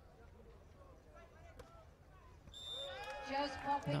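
Quiet outdoor court ambience, then a short, high whistle blast about two and a half seconds in, the referee's whistle ending the rally. Voices rise right after it.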